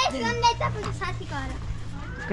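Children talking in high voices, over a steady low hum.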